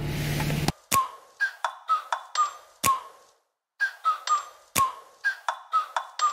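Sparse electronic music: a run of sharp clicks, each with a short bell-like ping, broken by a brief silent gap near the middle. For the first moment a steady car-interior hum runs under it, then cuts off suddenly.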